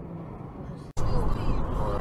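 Steady road and engine noise inside a moving car, recorded by a dashcam. Just under a second in it cuts off abruptly and restarts louder, as the recording switches to another dashcam's road noise.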